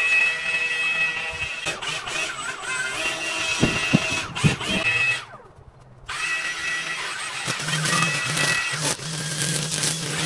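String trimmers running with a steady high whine, dropping away briefly a little past the middle and then coming back.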